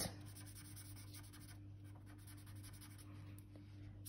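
Faint scratching of a felt-tip pen on paper as an area is shaded in, over a low steady hum.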